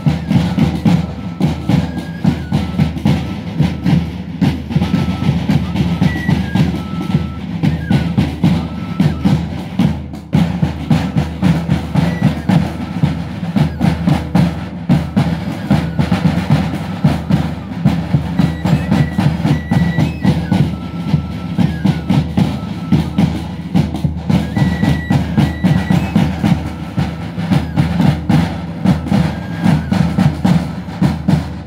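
Andean banda típica: several large bass drums and a snare drum beaten in a fast, steady rhythm, with two transverse flutes playing a thin, high melody over the drumming.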